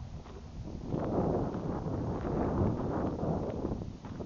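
Wind gusting across the microphone, swelling about a second in and easing off near the end, over footsteps crunching on a gravel dirt road.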